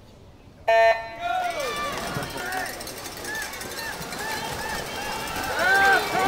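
Swim meet electronic start signal: one short, loud beep about a second in, sending the swimmers off the blocks. Spectators then cheer and shout for the swimmers, getting louder toward the end.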